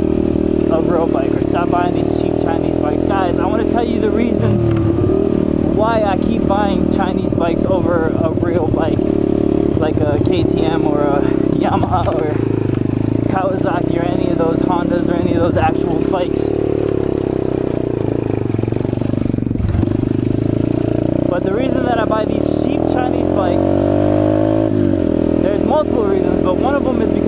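A Chinese dirt bike's single-cylinder engine running under way at a fairly steady pace. Near the end the revs climb for a few seconds and then drop sharply, as on a gear change.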